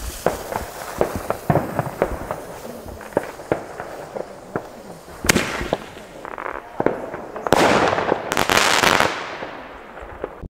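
A 30 mm single-shot firework mortar tube (Bombenrohr, 16 g net explosive) being fired. Its lit fuse sputters and crackles for about five seconds, then the tube launches its shell with a sharp bang, and about two seconds later the shell bursts overhead with a loud, rushing noise lasting about a second and a half.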